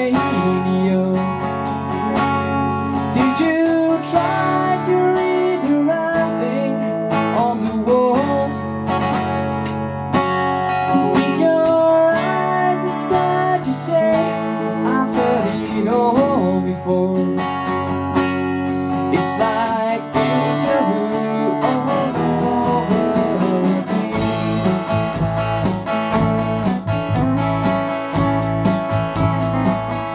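Acoustic guitar strummed together with an electric guitar, played live, with a male voice singing over them in places.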